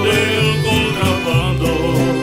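Mariachi band playing live, an instrumental stretch with string instruments over a deep bass line that moves note to note about every half second.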